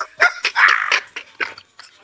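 Several men laughing hard, with short sharp yelping bursts of laughter.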